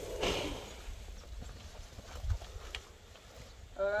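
Cattle crowding a wooden salt trough, with a short rustling burst about a quarter second in and a few faint knocks later, over a low wind rumble on the microphone.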